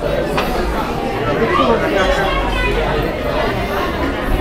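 Indistinct chatter of several shoppers' voices, steady and overlapping, with no single voice standing out.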